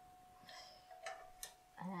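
A few faint, light clicks of a wire-mesh spider strainer knocking against a wok of frying oil as fried eggplant slices are lifted out and shaken to drain.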